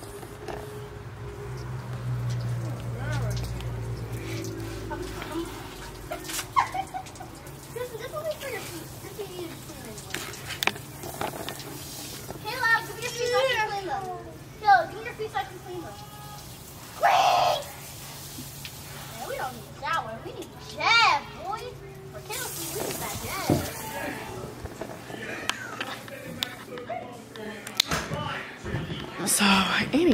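Children's voices calling and shouting at intervals as they play with a garden hose, over a steady low hum.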